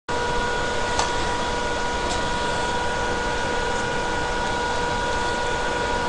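Steady hiss with a faint, even whine of several high tones running under it, and a couple of faint clicks about one and two seconds in.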